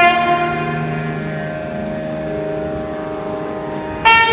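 A held nagaswaram note tapers off in the first second or so, leaving the steady, unchanging drone of an electronic sruti box.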